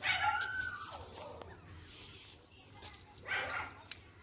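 An animal's high, drawn-out call that holds its pitch and then falls away about a second in, followed by a shorter call about three seconds in.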